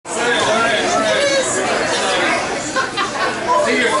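Several people talking at once, their voices overlapping into steady chatter.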